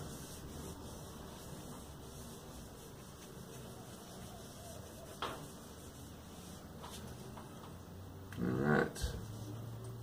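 Faint rubbing of a cotton cloth pad working Tru-Oil into a maple guitar neck, over a low room hum. A brief murmur comes near the end.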